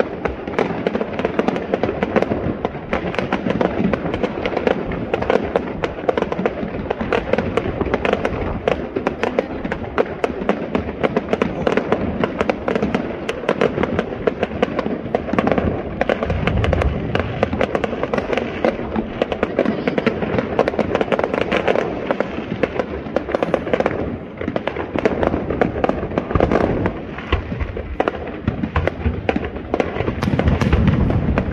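Aerial fireworks display: a dense, unbroken barrage of shells bursting and crackling, many bangs a second with no pause.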